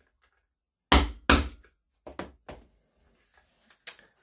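Hammer striking a metal rivet setting tool to set a copper rivet through leather: two hard strikes about a second in, then a few lighter knocks and one more sharp tap near the end.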